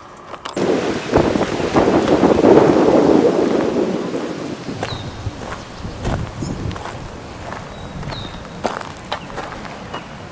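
Wind buffeting the microphone: a rushing gust swells to a peak about two to three seconds in, then eases to a lower steady rush with scattered clicks. A few short bird chirps come through in the second half.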